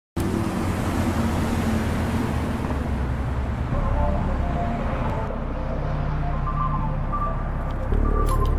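City bus and street traffic going by, a steady rushing noise that thins out after a few seconds as a synth-pop intro with a short melodic line comes in about four seconds in.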